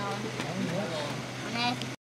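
Background chatter of people talking over a steady low hum, with two short bits of high-pitched voice; the sound cuts off abruptly just before the end.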